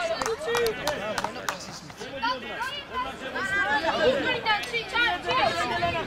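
Young voices shouting and calling to one another across a football pitch, several overlapping, with a few sharp knocks in the first second and a half.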